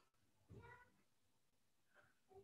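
Near silence: quiet room tone with one faint, short pitched cry about half a second in.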